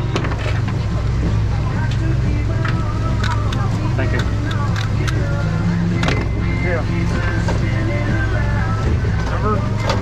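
Steady low drone of a sportfishing boat's engines, with indistinct voices of anglers and a few sharp clicks and knocks on deck.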